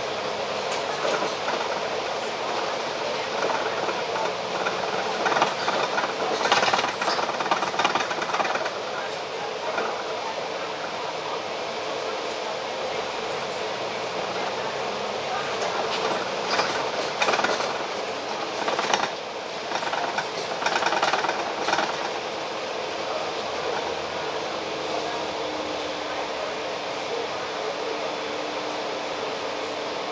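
Cabin noise on board a moving Volvo Olympian double-decker bus: a steady hum of the engine and road, with spells of rattling and clatter about a fifth of the way in and again past the middle.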